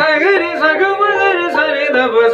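Male Hindustani classical voice singing khayal in Raag Bihag, the pitch swinging up and down in quick ornamented runs over a steady drone.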